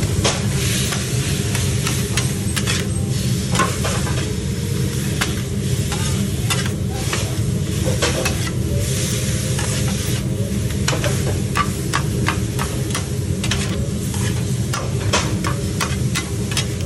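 Two metal spatulas chopping and scraping chicken and onions on a steel flat-top griddle: many irregular sharp clacks of the blades on the plate over the steady sizzle of the frying meat, with a constant low hum underneath.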